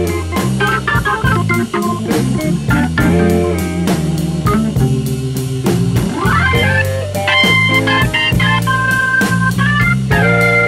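Blues band playing an instrumental passage without vocals: electric guitar over drum kit, bass and Hammond organ. About two-thirds in, a note slides up into long held high notes.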